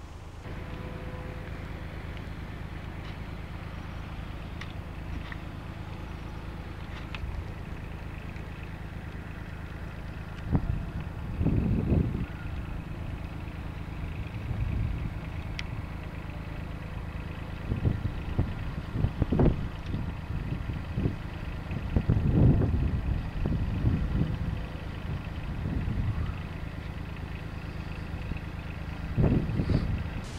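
A steady low engine hum, with irregular louder low rumbles coming and going from about ten seconds in.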